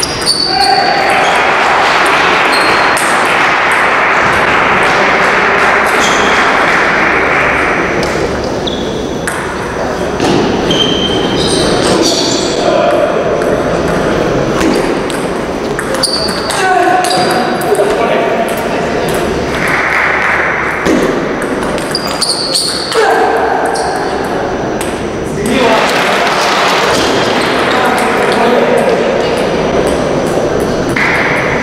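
Table tennis rallies: the plastic ball clicking off the rackets and the table again and again, over voices and crowd noise echoing in a large sports hall.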